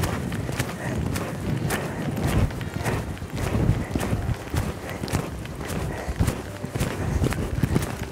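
Pony's hooves cantering on a sand arena surface: a steady run of muffled hoofbeats, about two strides a second.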